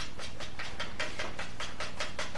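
A cube of pool cue chalk rubbed rapidly over a cue tip in quick, even scraping strokes, about five a second.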